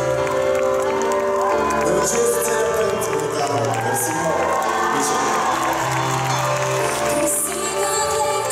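Live pop band playing, keyboards over a bass line that holds each note for a second or two before changing, with the audience cheering and calling out over the music.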